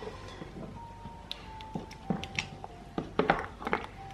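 A spoon stirs thick soup in a stainless steel pot, with a handful of short knocks and scrapes of the spoon against the pot, over faint background music of long held notes.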